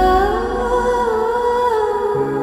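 Background music score: a wordless voice humming a slow, wavering melody over sustained instrumental notes.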